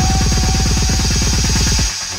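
Techno DJ mix at a build-up: a rapid kick-drum roll, about twenty hits a second, under a steady hiss and a held synth note. It cuts off suddenly near the end, just before the beat returns.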